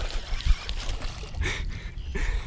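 Hooked largemouth bass splashing and thrashing at the water's surface as it is reeled to the boat, with a sharp knock about halfway through.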